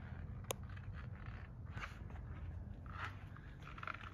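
Faint rustling and shuffling of someone moving about while handling the phone, with one sharp click about half a second in, over a low steady room hum.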